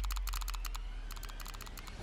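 Rapid, irregular clicking of computer keyboard typing over a deep low drone that fades out.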